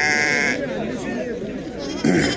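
Sheep bleating at close range: one bleat fading out about half a second in, and another starting near the end, over the chatter of a crowd.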